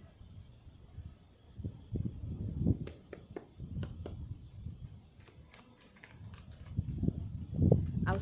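A deck of tarot cards being shuffled by hand: irregular soft rustling and handling thumps, with clusters of sharp card clicks about three seconds in and again near the middle.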